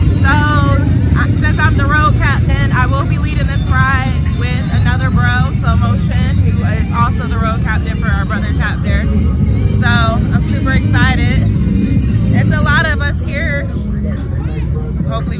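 A large group of motorcycles, touring baggers among them, rumbling steadily as they roll past slowly in a line, with people's voices over the engine noise.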